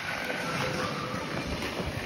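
Steady rushing noise of skating across an indoor ice rink: skate blades gliding on the ice, with a low, uneven rumble from the moving phone.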